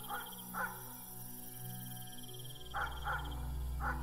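A dog giving four short, soft whimpering calls: one near the start and three close together in the last second and a half. Under them run a steady chirring of crickets and a low music drone that comes in about halfway.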